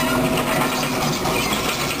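Hydraulic excavator at work digging a trench: a dense, continuous mechanical rattling and clatter from the machine as its bucket works the soil.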